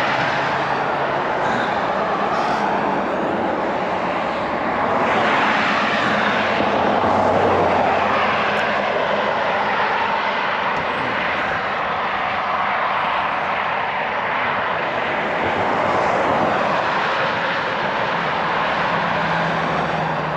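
Road traffic passing on a multi-lane road, a steady rush of tyres and engines that swells as vehicles go by, loud enough to drown out talk.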